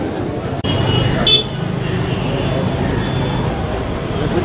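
Busy street ambience of crowd chatter and traffic, with a short vehicle horn toot about a second in.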